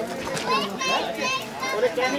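Children's high-pitched voices talking and calling out over one another, with wavering pitch.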